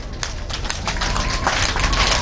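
Audience applauding, the clapping growing louder through the pause, with a steady high tone coming in about a second in.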